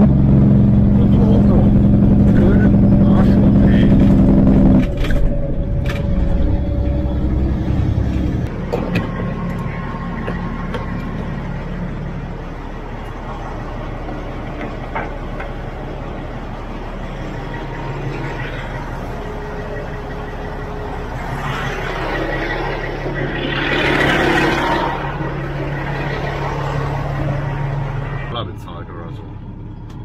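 Semi-truck's diesel engine running, with a loud steady drone for the first five seconds that then drops to a lower, quieter hum. A rushing noise swells and fades about 22 to 26 seconds in.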